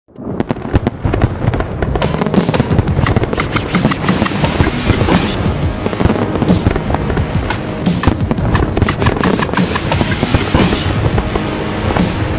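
Fireworks popping and crackling in a dense, continuous barrage that starts right at the beginning, with music underneath.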